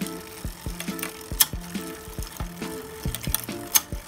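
Bicycle drivetrain turned over in the small chainring, giving two sharp clicks about two seconds apart: the sign of a connecting pin working its way out of the chain, close to letting it snap. Background music runs underneath.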